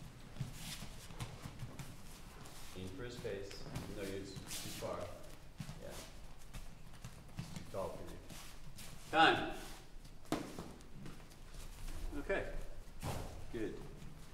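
Bare feet stepping and shuffling on gym mats, with scattered light knocks from boxing gloves, during a partner slipping drill. Indistinct voices come and go, and a short call about nine seconds in is the loudest sound.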